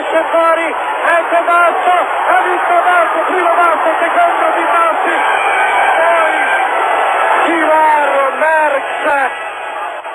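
A man commentating in Italian over crowd noise; the commentary stops shortly before the end.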